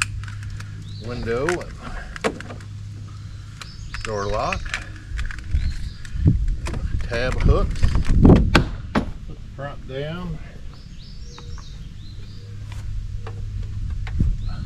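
Hands pressing and knocking a plastic door trim panel of a Ford F-350 into place: a run of sharp clicks and knocks, loudest about eight seconds in, over a steady low hum.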